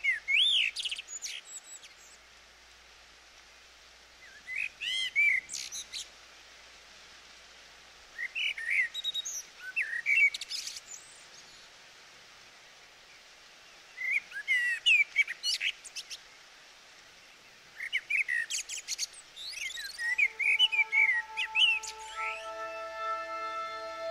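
A songbird singing in short bursts of quick, gliding chirps, a new phrase every four seconds or so, over a faint steady hiss. Sustained music tones come in near the end.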